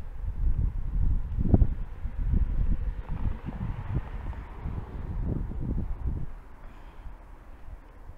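Irregular low rumble of wind buffeting and handling noise on a handheld action camera's built-in microphone while the camera is swung around, with a few dull knocks.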